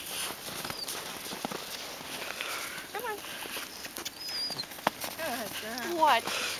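Quarter horse filly walking on snow with a rider aboard, her hoofsteps coming as scattered soft knocks. People's voices come in briefly about halfway and again near the end.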